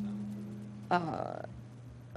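Low steady hum from a loud microphone and PA system, fading out about halfway through. About a second in comes a short, croaky voice sound, like a half-second murmur, with a rising pitch.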